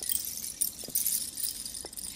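Strands of a bamboo bead curtain swinging and clicking against each other: a light, high jingling rattle with a few separate clicks.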